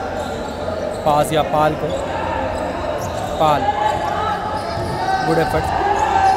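A basketball bouncing on a wooden indoor court, with players' voices calling out during play.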